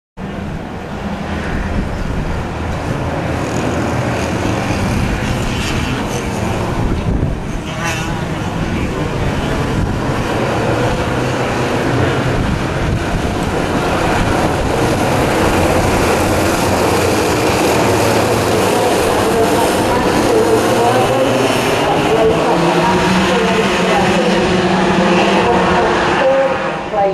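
A pack of Junior TKM two-stroke racing karts running at speed, many engines overlapping, louder and more varied in pitch in the last few seconds.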